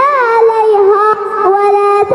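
A song with a high singing voice holding long, wavering notes that glide from pitch to pitch.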